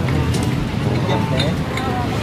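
Street background: a steady low rumble of traffic with people's voices faintly over it about a second in.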